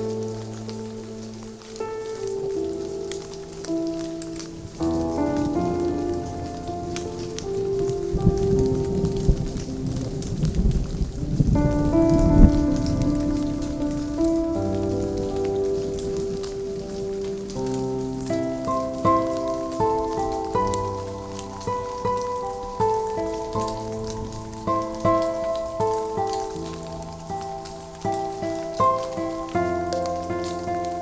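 Steady rain, with many fine drop ticks, mixed with slow lo-fi chill music of sustained chords and melody notes. A low rumble swells from about eight seconds in and fades by about thirteen seconds.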